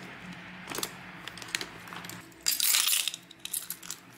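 Small items being handled and packed into a leather bucket bag: light clicks and clinks of hard objects, with one loud rustling burst about two and a half seconds in.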